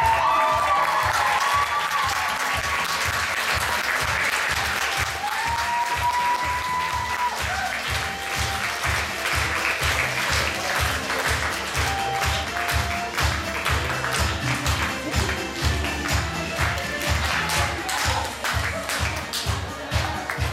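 Theater audience applauding at a curtain call over music with a steady beat.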